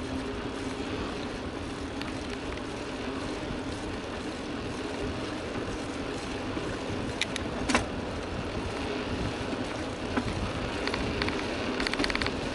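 Mountain bike rolling along an asphalt road, heard from a camera on the bike: steady tyre and wind noise with a faint low hum. A loud sharp click comes about three-quarters of the way in, and a run of quick clicks near the end.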